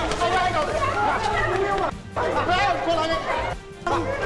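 Several people talking over one another, in Burmese film dialogue, with background music underneath; the voices break off briefly about two seconds in and again near the end.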